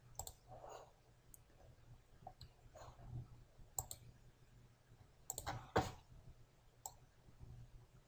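Computer mouse clicks, faint: about eight scattered single clicks with the loudest about three-quarters of the way through, over a low steady hum.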